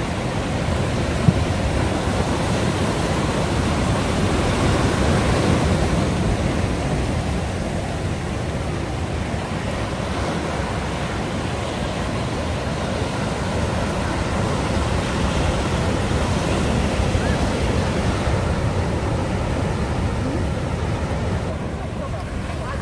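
Sea surf breaking on rocks and washing up a sandy shore, a continuous rush that swells and eases gently as waves come in. A single brief click sounds about a second in.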